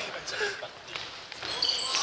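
Play in an indoor futsal game in a gym hall: the futsal ball being kicked and bouncing on the wooden floor. Short high squeaks come near the end, over players' distant voices.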